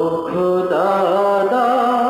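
A man singing a Bengali Islamic devotional song (gojol) into a microphone, in long held notes that climb in steps to a higher sustained note.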